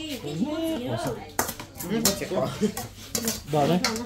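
Metal spoon scraping and clinking against a stainless steel mixing bowl while minced meat and herbs are stirred, with several sharp clinks in the second half.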